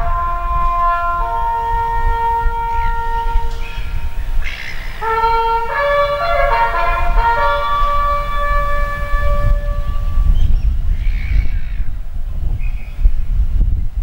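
A solo brass instrument plays the slow, long-held notes of a bugle call, with the melody ending about two-thirds of the way through. A low rumble of wind on the microphone runs under it.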